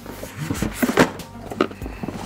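Cardboard boxes rubbing and knocking against each other as inner boxes are lifted out of a larger cardboard box, with a handful of short soft knocks.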